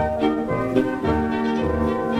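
Upbeat dance music with sustained instrumental notes over a steady bass beat, about two beats a second.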